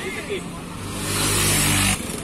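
Small motor scooter engine coming up close, growing steadily louder with its note rising slightly, then cut off abruptly at the end.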